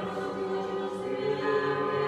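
Choir singing an Orthodox church chant in sustained chords that move to new notes about halfway through.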